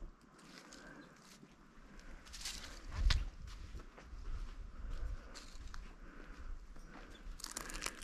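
Footsteps crunching through dry leaves and dead brush, with scattered crackles and a low thump about three seconds in.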